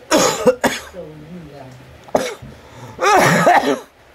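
A man coughing and clearing his throat as he eats spicy noodles, reacting to the chili heat. A harsh cough at the start, a few short throat sounds, and a longer hoarse, voiced gasp about three seconds in.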